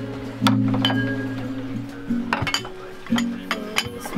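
Ceramic plates and bowls clinking as they are set down on a wooden table, several sharp clinks with a brief ring, over background music.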